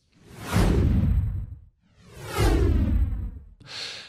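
Two whoosh sound effects for an animated title card, each swelling up and dying away over about a second and a half. The second has a falling sweep.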